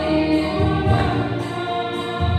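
Women's choir singing a gospel song together, with held, sustained notes, amplified through hand-held microphones.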